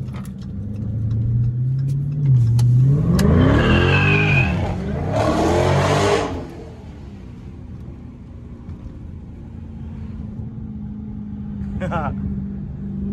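Dodge Charger SRT 392's 6.4-litre HEMI V8 accelerating hard, heard from inside the cabin. The engine note climbs and is loudest from about three to six seconds in, then eases back to a steady cruising drone.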